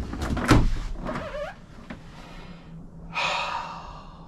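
Knocks of a plastic RV toilet's seat and lid as a man lowers himself onto it: two sharp knocks in the first half second, then a brief noisy rush about three seconds in.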